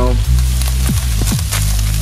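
Ground turkey sizzling in a frying pan, an even crackle, under background music with a deep bass line whose notes change in steps and a few quick rising sweeps midway.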